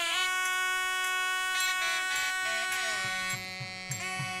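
Nadaswaram, the South Indian double-reed pipe, playing long held notes over a steady drone, with a slow glide down in pitch near the middle. Low drum strokes come in near the end.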